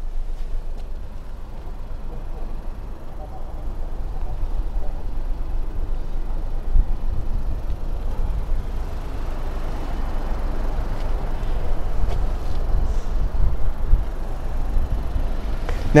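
Gusty low rumble of wind buffeting the microphone, over a steady outdoor noise haze, swelling louder in the second half.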